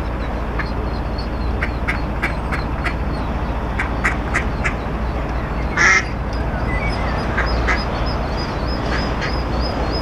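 Ducks quacking in quick runs of short calls, with one louder burst of sound about six seconds in, over the steady low rumble of the narrowboat's engine.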